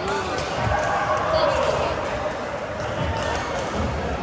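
Badminton rally sounds in a large echoing sports hall: sharp racket-on-shuttlecock hits and players' thudding footwork on the court, over a steady background of people's voices.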